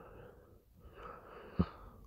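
A mostly quiet pause holding a faint breath-like intake of air about a second in, with a short soft click just after it.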